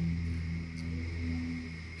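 A low, steady hum made of a few held low tones, with no speech and no clicks.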